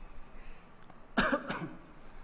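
A man's short cough about a second in, picked up by the microphone.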